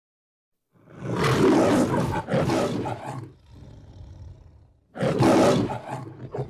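The Metro-Goldwyn-Mayer logo's lion roaring twice. The first roar starts about a second in and lasts over two seconds. A quieter low rumble follows, then a second short roar near the end.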